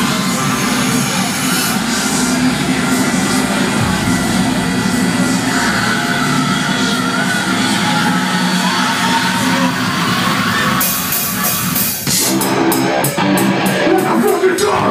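Live heavy metal band's intro: a sustained, droning wash of sound with a wavering higher tone over it, then drum hits coming in about twelve seconds in as the band starts the song.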